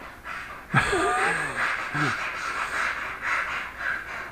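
A woman laughing under her breath, stifled behind her hands, starting about a second in and going on in uneven gasps.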